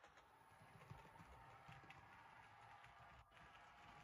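Near silence: faint low room rumble with a few light, irregular ticks.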